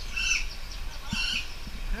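A speckled mousebird perched on a shoulder gives two short, high, wavering calls about a second apart as it feeds from a cup of fruit. These are hungry begging calls.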